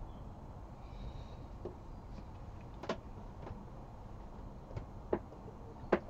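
Quiet tasting pause: faint clicks and small mouth sounds as a sip of whisky is taken and held in the mouth. A light knock just before the end as the nosing glass is set down on the table.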